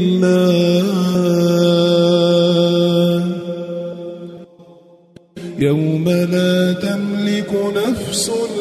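Quran recitation in the melodic tajweed style: a single voice holds one long drawn-out note for about three seconds, fades to a brief pause, then resumes chanting about five and a half seconds in.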